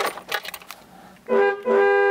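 A BMW E21 323i's twin-tone car horn sounding twice, about a second and a quarter in: a short toot, then a longer blast, two steady notes at once.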